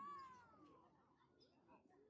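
A single faint, high-pitched call, about a second long, rising and then falling in pitch, over faint distant voices.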